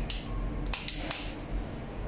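A plastic lip plumper stick being uncapped and pushed up: a brief scrape just after the start, then a quick run of three or four sharp plastic clicks about a second in.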